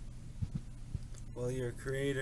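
A lull on an internet voice call: a steady low hum with a few soft low thumps, then a faint voice coming in about halfway through.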